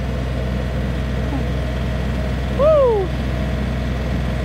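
Tractor engine running steadily. About two and a half seconds in, a short loud cry cuts across it, rising then falling in pitch.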